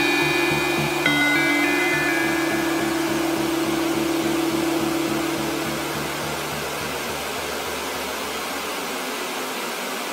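Closing bars of a dubstep track: high held synth notes over a pulsing bass, the synth notes stopping about three seconds in. The bass then fades, leaving a hiss-like wash of noise that slowly dies away.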